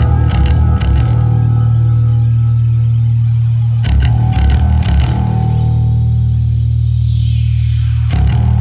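Loud improvised instrumental rock on four-track tape: a heavy bass and guitar riff, with a high effect sweep that falls in pitch over the last few seconds.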